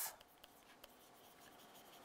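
Very faint scratching and a couple of light ticks of a stylus writing on a pen tablet.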